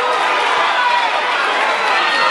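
Fight crowd shouting, many voices overlapping at once in a steady din.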